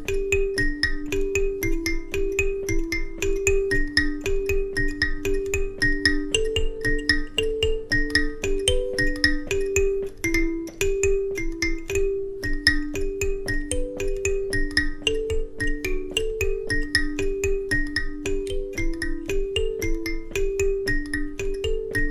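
Two Goshen Student Karimbas, small wooden-box kalimbas with metal tines, plucked together in interlocking kushaura and kutsinhira parts: the same short riff played by two players, one half a beat behind the other. The result is a dense, even stream of plucked, ringing notes cycling over a few pitches.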